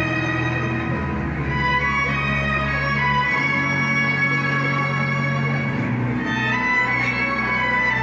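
Symphony orchestra playing live, led by the string section in long held chords that change every couple of seconds.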